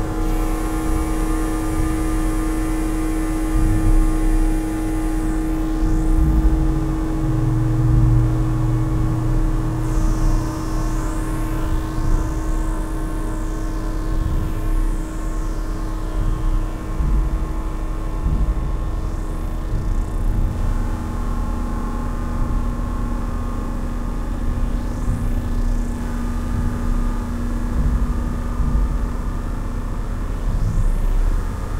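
Synthesizer pads played live: long held notes over a deep low drone, with high tones sweeping up and down through the middle of the passage. About two-thirds of the way through, the main held note gives way to a lower one.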